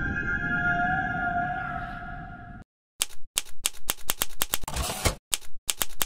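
A sustained, droning synth music tone fades out over the first couple of seconds. After a short silence, a rapid run of typewriter keystroke sound effects starts about three seconds in, roughly four sharp clacks a second, as a title is typed out letter by letter.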